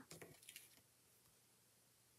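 Near silence: room tone, with a few faint soft sounds of cardstock being laid down and pressed flat by hand in the first half second or so.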